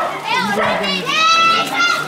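Children shouting and calling over crowd chatter, with one long high-pitched call about a second in.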